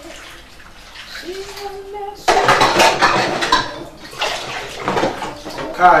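Water splashing in a kitchen sink in two loud bursts, the first about two seconds in lasting over a second, the second shorter, about five seconds in.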